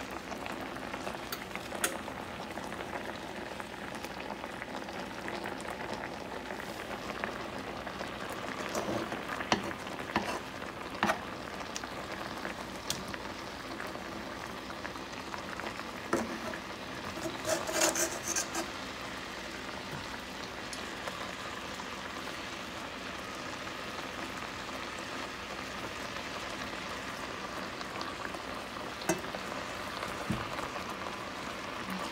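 Water bubbling steadily in a pan of cut potatoes on the boil, with a mesh skimmer now and then clinking and scraping against the pan, a cluster of clinks a little past the middle.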